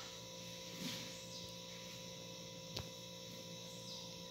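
Faint steady electrical hum, with a single light click about three seconds in.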